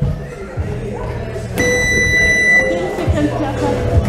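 A single electronic beep, one steady high tone lasting about a second, sounds about one and a half seconds in, over background music.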